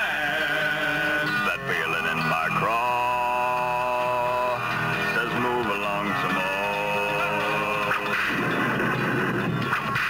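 A man singing a farewell song with guitar accompaniment, drawing out long held notes with vibrato.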